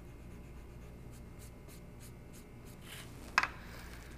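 A pencil's eraser end rubbing lightly over painted lettering on a wooden board in quick back-and-forth strokes, erasing leftover pencil lines. A single sharp knock sounds about three and a half seconds in.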